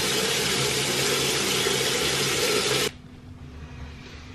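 Bathroom tap running into the sink as a face is rinsed, a steady rush of water that cuts off suddenly about three seconds in.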